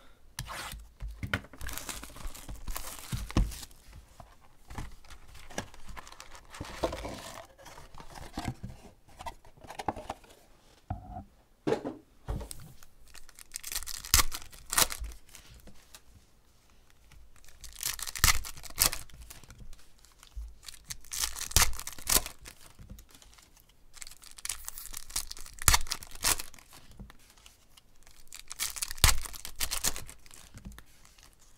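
Foil packs and wrapping of a 2016 Panini Contenders Football card box being torn open, crinkling and tearing in irregular bursts with short pauses between them.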